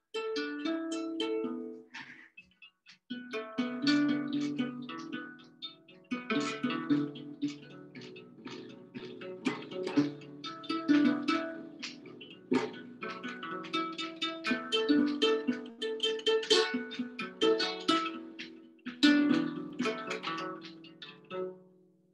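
Handbuilt kamalen n'goni, a West African harp-lute with a gourd body, hide skin and gut strings, being plucked in a repeating rhythmic pattern. The playing breaks off briefly about two seconds in, then resumes and runs on until just before the end.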